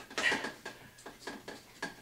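A string of light, irregular metallic clicks as the retaining tabs of a cut-in recessed can light housing are bent out and worked by hand. The tabs are being adjusted because they were not snapping into their locking notch against the ceiling drywall.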